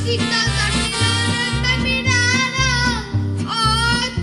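A child singing into a microphone over a Latin-style backing track with a steady, repeating bass line; the voice holds long wavering notes, breaking off briefly a little after three seconds.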